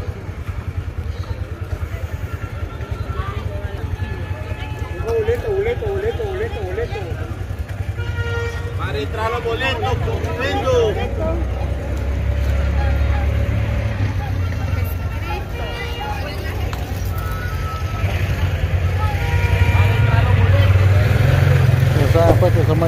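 Many people talking in the street around, over a steady low engine rumble from motor vehicles that grows louder near the end.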